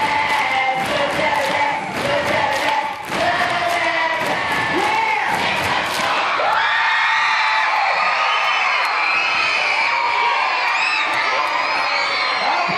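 A group of children singing the last line of their school song with rhythmic hand claps, about three a second. About halfway through this gives way to a crowd of children cheering and shouting.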